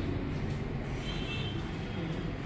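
Steady low background rumble with no distinct event, and a faint thin whistle about a second in.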